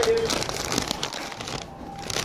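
Paper fast-food bag crinkling and rustling as it is handled and carried, with a brief voice at the very start.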